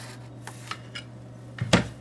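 A few faint scratches of a marker drawn along a three-hole punch, then one loud clunk near the end as the punch is set down or lifted off the desk. A steady low hum runs underneath.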